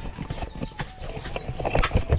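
Irregular knocks, clatter and rustle close to the microphone as a body-worn camera is carried along on foot, the loudest knocks near the end.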